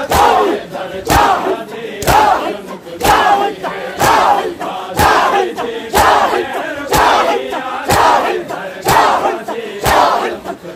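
A large crowd of men performing matam: bare chests slapped with open palms in unison about once a second, in a steady rhythm. Between the strikes the crowd shouts together.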